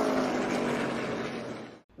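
NASCAR Cup Series race cars running on the track, heard through the TV broadcast as a steady rushing engine and track noise, with one engine tone falling slowly in pitch at the start. The noise fades and cuts off abruptly just before the end.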